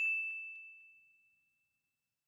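A single bright ding, a bell-like chime struck once as a title-card sound effect, ringing on one high note and fading away over about a second.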